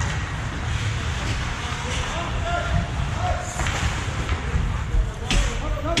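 Voices calling out over the steady, echoing noise of an indoor ice hockey rink during play, with a sharp knock near the end.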